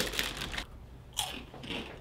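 Crunching bites of rolled-up chips being eaten and chewed.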